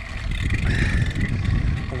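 Mountain bike riding along a forest trail, heard from a handlebar-mounted camera: a steady low rumble of tyres and wind noise on the microphone.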